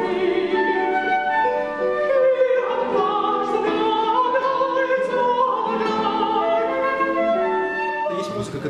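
Countertenor singing a melody in a very high range, in a classical chamber performance accompanied by flute and a quartet of classical guitars.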